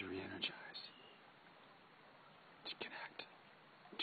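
A faint voice: a phrase trailing off at the start, then a few short whispered bursts about three seconds in, over a low steady hiss.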